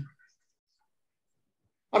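Near silence: a pause in a man's speech, with the end of one phrase at the very start and the next phrase beginning at the very end.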